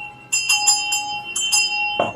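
Sleigh bells shaken several times, first about a third of a second in and again around a second and a half, with a high ring that carries on between shakes.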